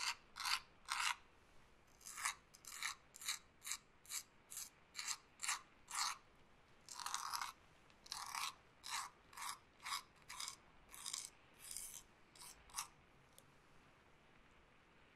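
Quick scratchy rubbing strokes close to a binaural ASMR microphone, about two a second, with a short pause about a second and a half in and a couple of longer strokes later on.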